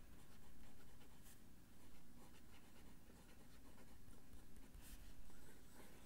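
Faint pen strokes of a fountain pen's 18-karat gold medium nib writing a word in cursive on notebook paper, with a little feedback but not scratchy.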